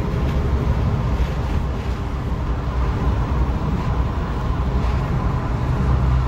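Inside the cab of a moving pickup truck: a steady low rumble of engine and road noise.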